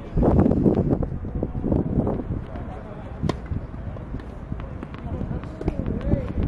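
Indistinct voices over a low wind rumble on the microphone, with one sharp knock about three seconds in.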